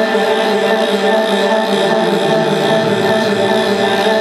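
Live band music in a sustained, droning passage: steady held tones with no drum beat, a little low-end movement coming in about halfway through.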